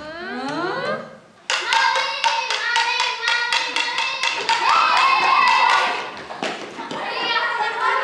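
A group of girls' voices raised together over rapid, rhythmic handclaps. A rising vocal glide comes in the first second, then from about a second and a half in the voices are held long and loud over the steady claps.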